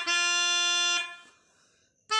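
Melodica (mouth-blown keyboard reed instrument) holding one reedy note for about a second, which then dies away into a short pause between phrases.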